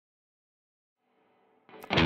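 Near silence for about a second and a half, then music fades in faintly and a distorted electric guitar comes in loudly, with a sharp attack, right at the end.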